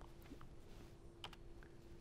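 Near silence in a lecture room: a handful of faint, scattered clicks from the podium computer as the slides are worked, over a faint steady hum.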